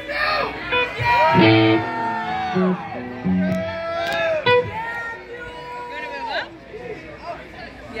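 Electric guitar and bass playing a few scattered notes between songs, mixed with concertgoers shouting and talking.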